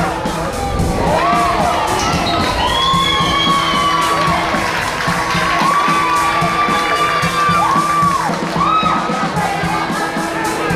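Crowd cheering and shouting at a flag football game, with several long, high-pitched held shouts rising and falling over the noise, celebrating a play.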